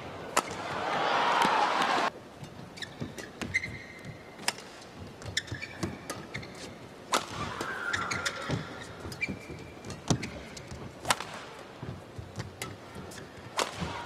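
Badminton rally: sharp racket strikes on the shuttlecock, spaced about a second or more apart, and short squeaks of players' shoes on the court mat. A swell of crowd noise fills the first two seconds and cuts off suddenly.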